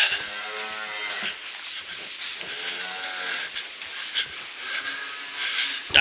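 Cattle mooing: three drawn-out calls, the last one fainter.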